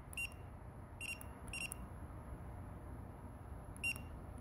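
Operation panel of a Juki DDL-9000C industrial sewing machine beeping as its buttons are pressed: four short high beeps, unevenly spaced, the last near the end.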